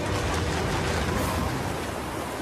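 Storm wind sound effect for a dust storm: a steady rushing noise with a low rumble underneath, easing slightly near the end.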